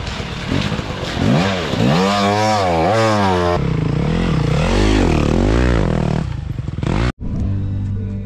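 Dirt bike engines revving up and down while riding off-road, the engine note rising and falling repeatedly. The sound changes abruptly about three and a half seconds in and drops out for an instant about seven seconds in.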